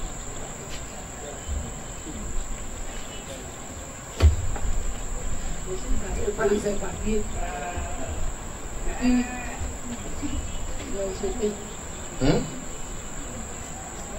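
Faint, hesitant murmured speech from an elderly woman into a handheld microphone, broken by long pauses, with a single thump about four seconds in. A steady high-pitched whine runs underneath.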